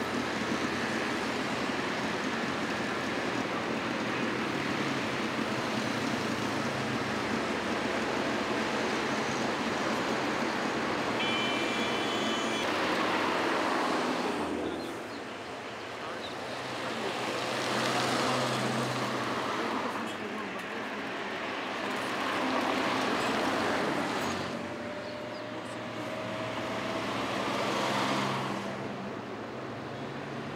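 Road traffic: a steady wash of cars and motorcycles, then single vehicles passing one after another, each swelling and fading, about every five seconds.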